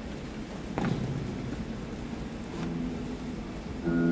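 Steel-string acoustic guitar: a strummed chord about a second in, a chord ringing briefly past the middle, and a louder chord near the end, over a steady background hiss.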